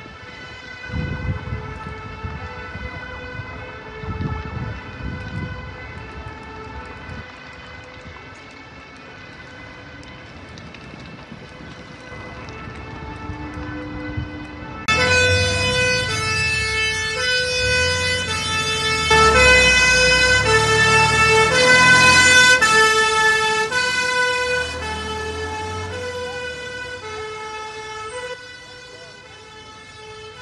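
Fire engine's two-tone siren alternating between a high and a low note, faint at first, then suddenly much louder about halfway through and loudest a few seconds later, with engine rumble underneath, before fading again near the end.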